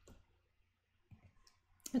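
Soft computer mouse click in a quiet pause, a sharp single click just after the start with a few fainter ticks later, then a woman's voice starts again just before the end.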